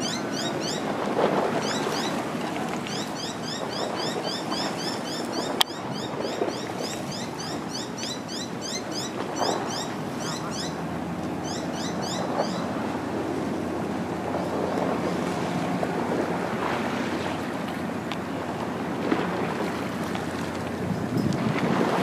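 Harbour water lapping against a stone sea wall, with wind on the microphone, as a steady rushing wash. Rapid runs of short, high, rising chirps sound over it through roughly the first half, and there is one sharp click about five seconds in.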